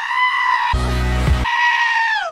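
Goat-scream edit of a pop song: a goat's long held scream stands in for the sung word, twice, with a heavy bass-and-drum hit between the two screams.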